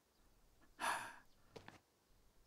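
One breathy sigh about a second in, followed by a fainter short breath near the end; otherwise near silence.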